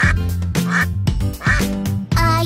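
A duck quacks three times, about three-quarters of a second apart, over bouncy children's song music.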